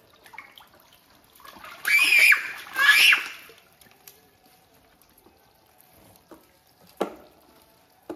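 Water sloshing and splashing in a plastic tub of live fish as hands reach in, with two loud, short, high-pitched squeals about two and three seconds in. A sharp knock sounds near the end.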